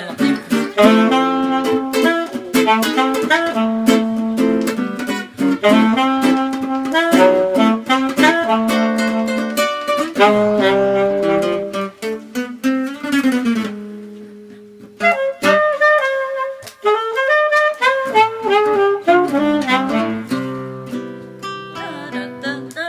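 Live duo of saxophone and classical acoustic guitar: the saxophone plays a melody over the guitar's picked accompaniment. The playing thins to a brief lull a little past halfway, then resumes.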